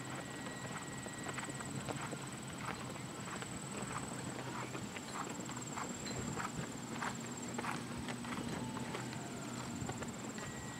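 A horse's hoofbeats on soft arena footing, a regular beat of about two strikes a second.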